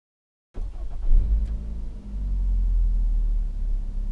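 Cabin noise of a stationary Nissan X-Trail with its 2.5-litre petrol engine idling: a low, steady hum. It starts abruptly about half a second in and swells briefly about a second in before settling.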